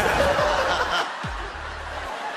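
Studio audience laughing, loudest in the first second and then dying away, over a low pulsing music bed.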